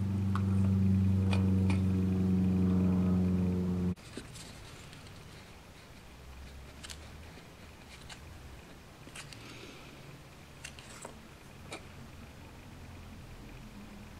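A loud steady low hum with a ladder of overtones cuts off abruptly about four seconds in. After it, a quiet room with a few light clicks and taps of a wooden stick mixing two-part epoxy resin on a piece of card and working it into a plastic model chassis.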